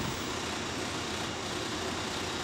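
Candy batch roller and rope-sizing wheels running with a steady, even mechanical whir as the turning rollers draw the filled mint candy mass into a thinner rope.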